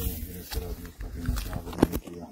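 Indistinct, wordless-sounding voices over a low rumble, with a single sharp click near the end.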